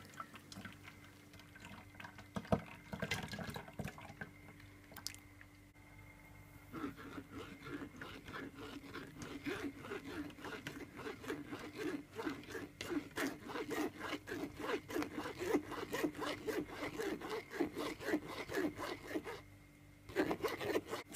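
Metal spoon stirring juice in a mesh strainer, scraping against the mesh to push the pulp-thick juice through. It runs as quick, continual scrapes and small liquid sounds from about a third of the way in until just before the end, after a quieter start with only a few faint clicks.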